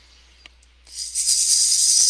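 A hand rattle with a round head on a wooden handle, shaken continuously from about a second in, giving a steady, bright rattling hiss.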